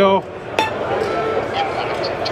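A small steel target plate struck once with a hand tool about half a second in, giving a short metallic clink and a brief ring, over the murmur of a crowd.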